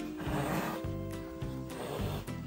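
Background music with a black leopard hissing over it: a breathy hiss soon after the start and another near the end, as she bares her teeth at a running treadmill.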